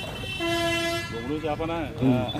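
A horn gives a single steady toot about half a second in, lasting under a second, amid people's voices.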